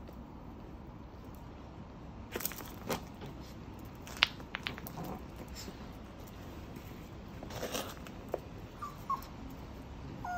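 Small dog playing with a ball on concrete: scattered clicks and scuffs, the sharpest about four seconds in, and a few short faint whines near the end.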